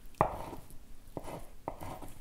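Kitchen knife chopping boiled egg white on a wooden cutting board: several sharp, irregular knocks of the blade on the board, the loudest just after the start.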